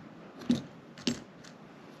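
Two sharp metallic clicks about half a second apart, then a fainter third: the brass draw latches on a wooden sand-casting flask being snapped open.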